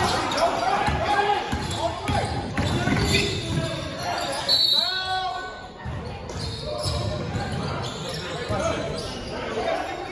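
Basketball game sounds in a large gym: the ball bouncing on the hardwood court and players shouting and calling out. Everything echoes in the hall, with one louder shout about halfway through.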